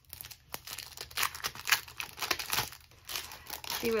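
Plastic packaging around a sticker order being handled and opened, crinkling irregularly in quick bursts.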